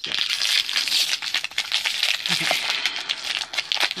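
Packaging crinkling and tearing continuously as it is handled and pulled open.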